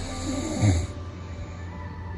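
A sleeping man snoring: one loud snore that falls in pitch, peaking a little over half a second in.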